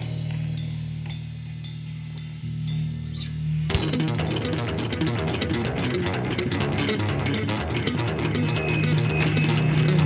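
Live rock band playing an instrumental passage: a held low bass note under light, regular ticks, then about four seconds in the full band of electric guitars, bass and drum kit comes in.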